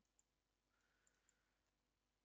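Near silence, broken by a few faint computer-mouse clicks: one early, then two close together about a second in.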